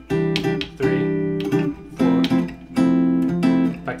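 Gretsch hollow-body electric guitar playing seventh chords of a 6-3-4-1 progression in C major, each chord picked with several attacks and left ringing, changing to a new chord about two seconds in.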